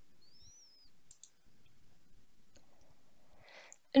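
A few faint computer mouse clicks, scattered over the first three seconds, with a short faint chirp-like tone under a second in. A soft breath comes just before speech starts at the very end.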